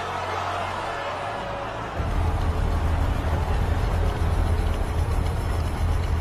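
Film soundtrack: a crowd and rushing water at first, then from about two seconds in a heavy truck engine's deep, steady rumble, with music underneath.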